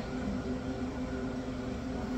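Steady low background hum with a few held tones and a faint hiss.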